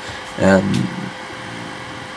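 A man's brief hesitant "um", then a steady background hum with a faint constant tone under it and a faint click.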